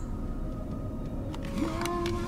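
Steady low rumble of a car's interior, with a faint thin tone above it. Near the end a brief pitched note rises and then holds.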